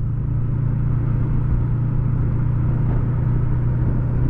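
Yamaha MT-03 motorcycle engine running at a steady, even pitch while cruising at low speed, heard from the rider's seat over a haze of road and wind noise.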